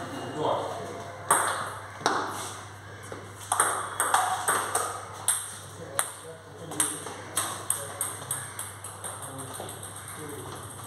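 Table tennis balls clicking off tables and bats in irregular sharp ticks, coming about two a second from midway on.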